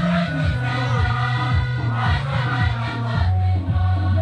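Nuer gospel choir singing together over a steady low accompaniment with a regular beat.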